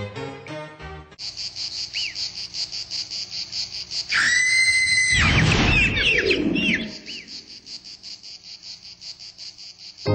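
Insects chirping in a steady, high, pulsing trill of about four pulses a second, starting as a piece of music ends about a second in. In the middle comes a loud, level whistled call, followed by a quick run of chirps.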